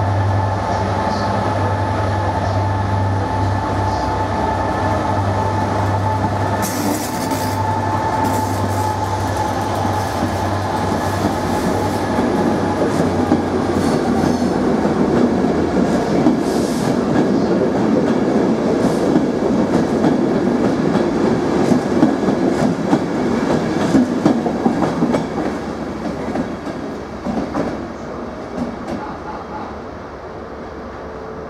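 Class 67 diesel locomotive's EMD two-stroke V12 engine running with a steady low drone as the train approaches and passes. The coaches then run by with wheels clattering over the rail joints, loudest in the middle and fading near the end as the driving van trailer draws away.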